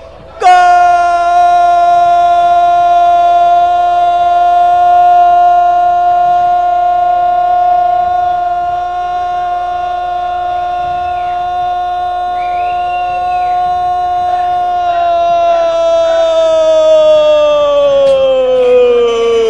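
Radio football commentator's long drawn-out shout of 'gol', one loud held note that starts about half a second in, stays at a steady pitch for about fifteen seconds, then slides down as his breath runs out.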